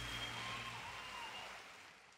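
Concert audience applauding after the final song, fading out steadily.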